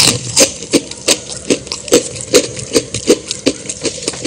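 Steady, evenly spaced clicks, about three a second, each with a short low knock, like a mechanical ticking rhythm.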